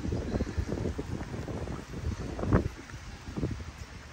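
Wind buffeting the microphone outdoors, an irregular low rumble that rises and falls in gusts, with one stronger gust about two and a half seconds in.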